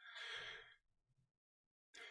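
A man's short, faint breath, lasting under a second.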